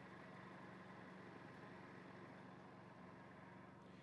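Near silence: a faint, steady low hum with no distinct events.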